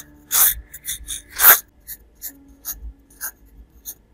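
Graphite pencil sketching on watercolour paper, the lead scratching across the sheet. Two long, louder strokes come in the first second and a half, then a run of shorter, lighter strokes.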